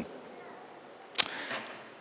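A pause in a man's speech into a handheld microphone: faint steady hiss, then a single sharp click about a second in, followed by a soft, brief "uh".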